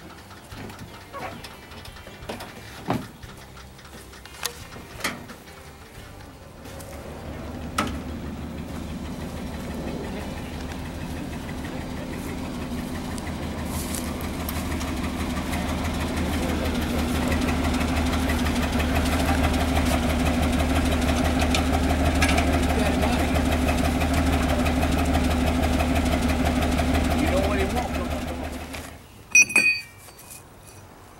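A few knocks and clatters, then an engine running steadily, growing louder over several seconds and holding even before cutting off suddenly a couple of seconds before the end. Two loud clatters follow.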